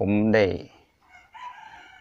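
A short spoken phrase, then a rooster crowing faintly in the background, one drawn-out call starting a little past halfway.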